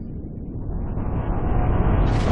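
Intro sound effect: a low, noisy rumble that swells steadily louder and brighter, building up to a burst.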